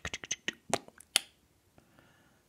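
A few short, sharp clicks and taps from handling a clear plastic nail-stamping stamper, fingernails knocking on its housing; the loudest come about three-quarters of a second and a little over a second in.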